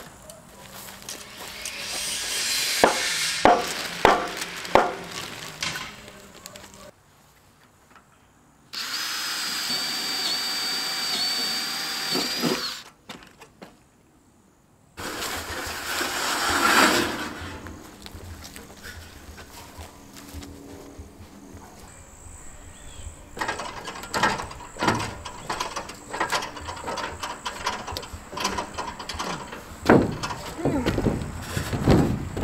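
Metal roofing panels being handled, with a series of knocks and rattles, then a power tool running steadily for about four seconds near the middle. More clatter and scattered knocks follow in the second half.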